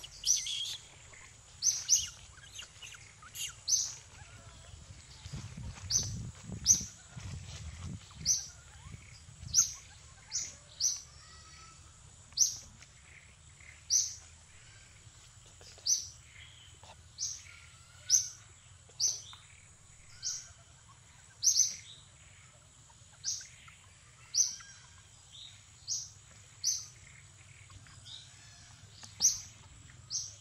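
A bird repeating a short, sharp chirp every one to two seconds, over a steady high-pitched whine.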